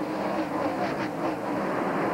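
Several NASCAR stock cars running at racing speed past the track, a steady, continuous V8 engine sound from the pack.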